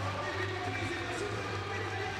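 Faint, reverberant indoor-arena ambience: a crowd murmuring, with indistinct music and voices from the public-address system and a low steady hum.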